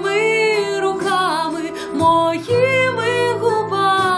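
A woman singing a slow pop ballad in long, held notes that slide in pitch, over an instrumental backing track.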